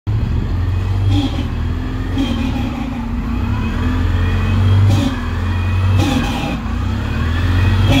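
CNG New Flyer transit bus, its Detroit Diesel Series 50G natural-gas engine idling with a steady low hum. Short hisses recur every second or two.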